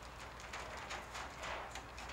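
Faint handling noise from a 4x4 grip frame stretched with opal diffusion being moved: soft rustling with a few light, irregular knocks.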